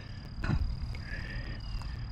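Outdoor ambience by a pond: a low rumble and a steady thin high tone, a short knock or rustle about half a second in, and a faint short animal call about a second in.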